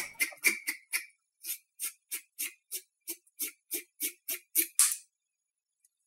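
A rhythmic percussive beat of short, evenly spaced hits, about three a second, each with a hissy top, that stops abruptly about five seconds in.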